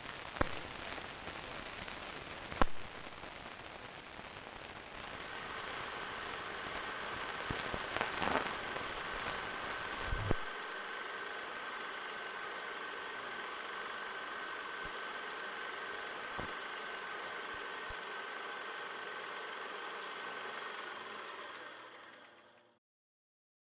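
Hiss and crackle of an old film print's worn soundtrack, with a few sharp pops. About five seconds in, a steady high whine joins the hiss, and the whole fades away at the very end.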